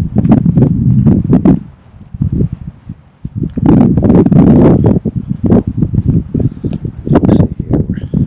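Wind buffeting the camera microphone in loud, low, rumbling gusts while the camera is walked along. It drops away briefly about two seconds in, then picks up again.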